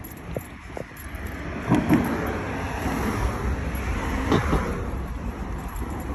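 Road traffic: a car passing, its noise swelling through the middle and fading, over a steady low rumble.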